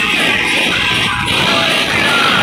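Loud DJ music playing from a large sound system.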